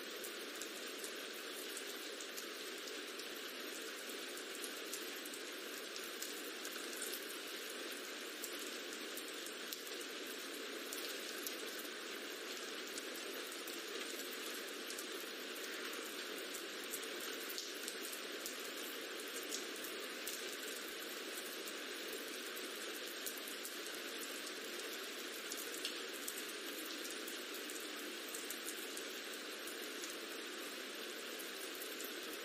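A rain ambience track: steady rainfall with scattered small drop ticks, even in level throughout and with no low rumble.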